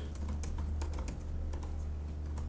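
Typing on a computer keyboard: an irregular run of light key clicks as a short title is typed, over a low steady hum.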